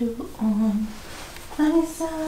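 A woman humming a slow tune in long held notes with short breaks between them, lulling a newborn to sleep.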